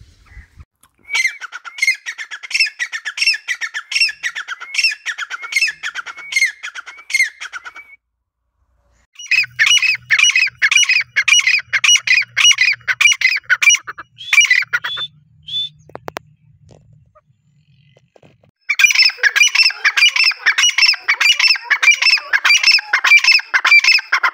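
Grey francolin (teetar) calling loudly in three long bouts of rapidly repeated, high-pitched notes, with short pauses between the bouts.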